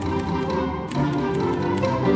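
Orchestra playing, the string section holding sustained bowed notes, with a few short, sharp tapping strokes cutting through.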